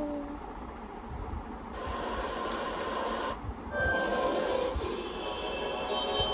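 Opening sound design of a K-pop music video playing back: a rushing noise that swells in two surges, with music tones coming in near the end.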